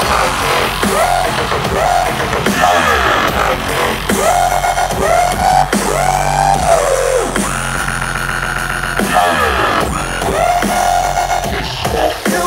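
Live dubstep played loud over a concert sound system: synth lines that swoop up and down in pitch, over a steady deep bass.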